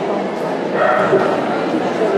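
Many people talking in a large hall, with a dog's high-pitched cry about a second in.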